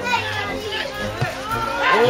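Footballers and touchline spectators shouting calls across the pitch during an attack, several voices overlapping with no clear words.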